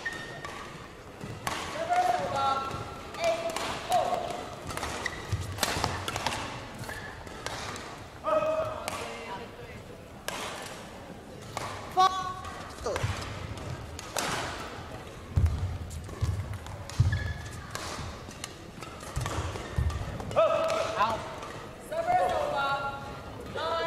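Badminton rally: repeated sharp racket strikes on the shuttlecock, with short squeaks of shoes on the court mat.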